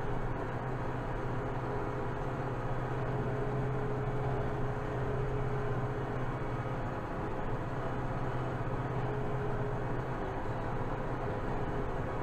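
Kubota M7060 tractor's four-cylinder diesel engine running at a steady drone, heard from inside the cab as the tractor drives across the field.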